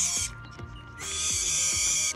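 Baby sooty owl's loud, hissing screech: one call ends just after the start and another runs from about a second in. It is the food-begging call of a hand-raised chick.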